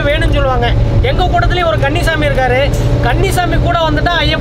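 A man talking over the steady low rumble of a bus, heard from inside the passenger cabin.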